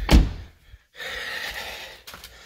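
A single low thump that dies away within half a second, then a brief drop to silence and a steady background hiss.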